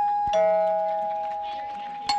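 A two-note chime, a higher note and then a lower one a third of a second later, each held and slowly fading; the higher note is struck again as the sequence ends.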